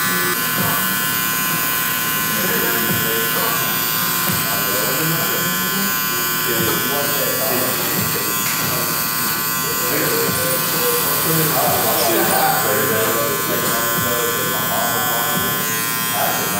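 Electric hair clipper running steadily with a high motor whine as it cuts along the beard line.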